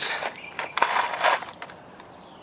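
A small plastic box of steel self-drilling screws being set down on concrete: a few sharp clicks, then a brief scraping rattle about a second in as it is slid into place.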